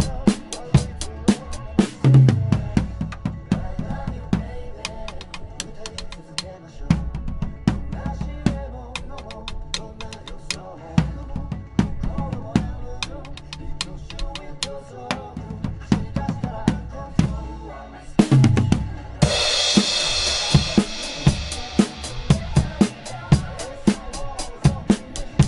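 Acoustic drum kit played in a steady groove of kick drum, snare and cymbal strokes over the song's backing track. After a short break about three-quarters of the way through, a cymbal crash rings out for about two seconds before the beat picks up again.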